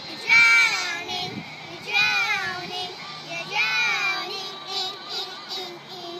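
Young girls singing loudly in high voices: three phrases about a second and a half apart, each sliding down in pitch.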